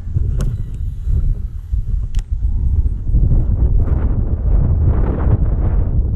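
Wind buffeting the microphone, a steady low rumble, with two sharp clicks in the first half and a louder rushing noise building from about halfway through.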